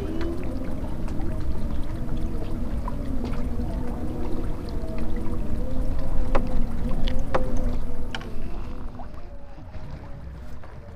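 A steady motor drone with low wind rumble and a few sharp clicks. The drone fades after about eight seconds.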